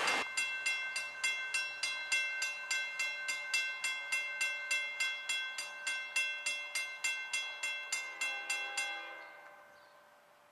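Railroad grade-crossing warning bell ringing rapidly, about three strikes a second, set off by an approaching train; it stops shortly before the end and the sound dies away.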